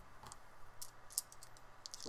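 A pair of small dice clicking against each other in a cupped hand as they are gathered up and shaken: a few separate faint clicks, then a quicker rattle starting near the end.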